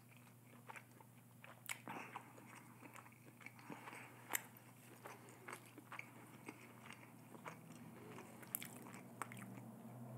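Faint close-miked chewing of a mouthful of Panda Express food: soft, irregular mouth clicks and crunches, the sharpest about four seconds in, over a faint low hum.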